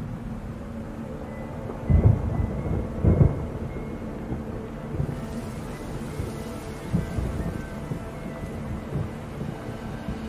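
Low rumbling booms over a steady hiss, like thunder in rain: two strong rolls about two and three seconds in, then smaller low thuds.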